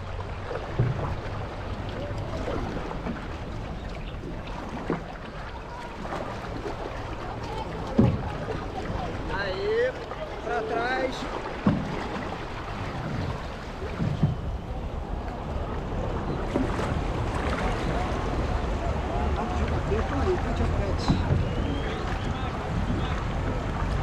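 Six-person outrigger canoe under way: paddles dipping and pulling through the water with splashes, water rushing along the hull, and occasional sharp knocks. Wind buffets the microphone.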